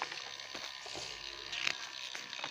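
Pages of a glossy magazine being turned and handled: a soft paper rustle with a few faint ticks.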